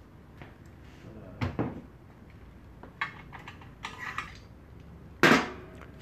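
Separate metal clunks and knocks from the squeegee and flood bar holders of a flatbed screen-printing press, moved down and along by hand, with the loudest knock about five seconds in.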